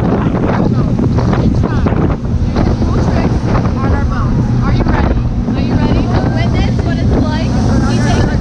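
A tour boat's engine running steadily at speed, with wind buffeting the microphone and rushing water from the wake; passengers' voices call out over it.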